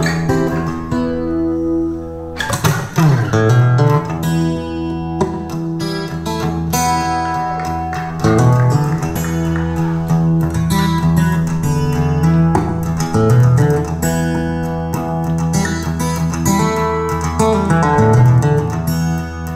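Guitar-led music with a steady bass line, played back through hi-fi loudspeakers driven by an Audiolab 8000SE integrated amplifier during a listening test.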